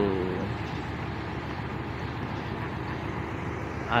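Steady road traffic noise from cars and lorries, a continuous low rumble with no distinct events standing out.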